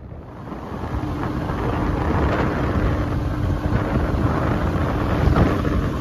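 Wind rushing over the microphone of a moving road vehicle, growing louder over the first two seconds, with a steady low hum running underneath.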